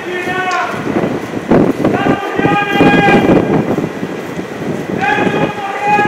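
Men shouting protest chants in long held calls of about a second each, three of them, over rough street noise.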